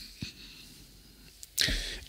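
A pause in a man's speech: faint room tone with a small click, then a short, sharp intake of breath near the end.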